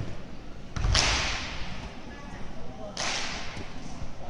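Two explosive fajin movements from a Chen-style tai chi performer: a heavy thud with a sharp snap about a second in, typical of a foot stomp with the uniform cracking, then a second sharp snap at about three seconds. Faint voices murmur in the background.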